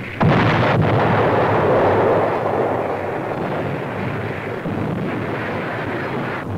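Bombardment explosions: a sudden loud blast about a quarter second in, then a continuous rumble of blasts that slowly eases.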